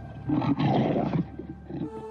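A wild animal's call, added as a sound effect, lasting about a second and trailing away, over a low steady hum.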